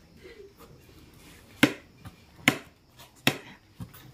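Three sharp clicks a little under a second apart, then a fainter one near the end: a knife cutting through soft boiled potato and striking the plate beneath.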